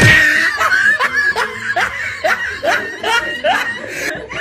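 A person laughing hard after a cry of "no", the laugh coming in a run of short bursts, each rising in pitch, about two a second.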